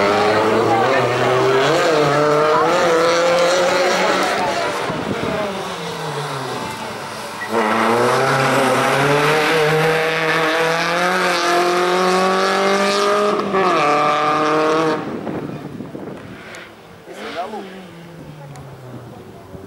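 Race-prepared Volkswagen Lupo's engine driven hard through a cone slalom, its pitch rising and falling with quick throttle lifts, dipping, then climbing loudly in one long pull with a drop in pitch at a gear change. The engine fades away near the end, with one short rev.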